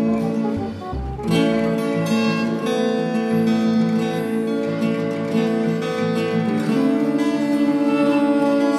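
Acoustic guitar and violin playing a slow tune together, the violin holding long notes over the guitar.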